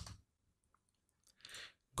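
Near silence in a short pause between spoken phrases, with a faint, brief breath about one and a half seconds in.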